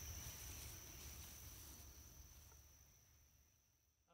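Faint outdoor ambience of insects making a steady high-pitched drone over a low rumble, fading out to silence about three seconds in.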